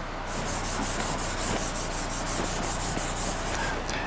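Chalk rubbing on a chalkboard in quick, even scratchy strokes, about seven a second, which start shortly after the beginning and stop near the end.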